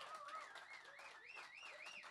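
Near silence, with one faint high tone that wavers up and down in pitch about three times a second and slowly rises.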